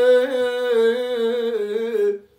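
An elderly man singing a Kurdish folk song unaccompanied, holding one long wavering note that breaks off at the end.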